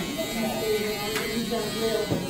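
Corded electric hair clippers buzzing steadily as they trim the hair at the nape of the neck, with a brief click about a second in.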